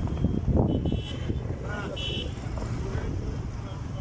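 Night street ambience: traffic and vehicle engines rumbling, with people's voices around, a louder rumble in the first second, and two short high-pitched tones about one and two seconds in.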